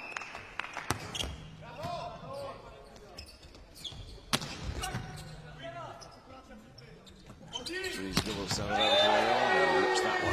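A volleyball being bounced and struck in play, heard as a few sharp slaps of the ball, the loudest about four seconds in, over the din of a crowd in an indoor arena. Voices swell loudly near the end.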